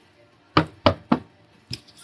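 Three quick, sharp knocks about a third of a second apart, then a fainter fourth near the end, as a deck of oracle cards is handled on a tabletop.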